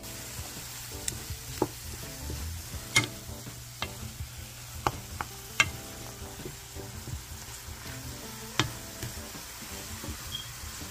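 Shrimp sizzling in a nonstick frying pan while a wooden spoon stirs them. The steady sizzle is broken by about eight sharp knocks of the spoon against the pan, at irregular moments.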